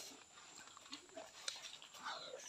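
Near silence: faint background with one brief faint click about a second and a half in.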